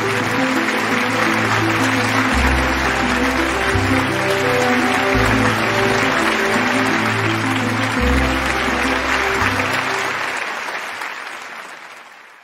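An audience applauding over show music with a stepping bass line, the clapping and music fading out over the last two seconds.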